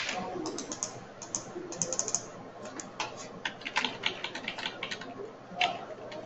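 Computer keyboard being typed on in quick, irregular runs of keystrokes, with one louder click right at the start.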